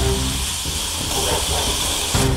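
A steady hissing noise, with the background music breaking off about half a second in.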